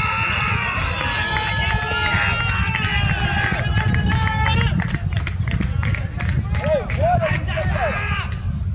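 Several voices shouting at a cricket match, long drawn-out calls overlapping for the first five seconds or so, then a few short rising-and-falling calls near the end.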